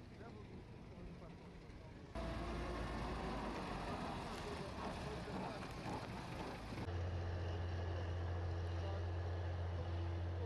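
Outdoor recording cut together in sections: open-air noise with faint voices, then the diesel engine of a wheel loader running with a steady low drone from about seven seconds in.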